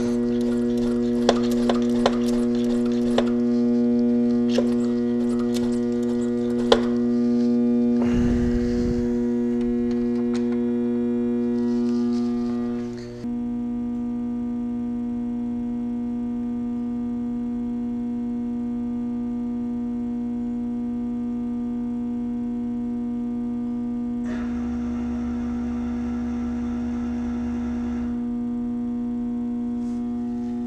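A steady electrical hum with overtones throughout. For the first seven seconds it comes with sharp clicks about once a second as the hand pump of a pressure brake bleeder on the brake fluid reservoir is stroked. Later a few seconds of extra whooshing noise are heard.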